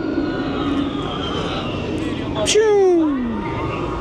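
Theme-park thrill-ride noise: a steady rumble with a thin falling whine over the first two seconds, then a loud falling whoop of a voice about two and a half seconds in.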